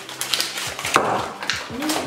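Cardboard box and foil wrapper of a Terry's Chocolate Orange crackling and tearing as the orange is unpacked, with a louder crinkle about a second in. A child makes a short wordless vocal sound near the end.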